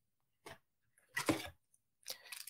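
A faint click, then a short papery rustle about a second in: trading cards and pack wrapper being handled.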